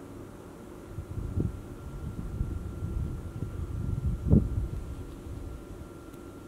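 Wind buffeting the microphone: a low, irregular rumble that swells about a second in, surges twice, and dies away near the end.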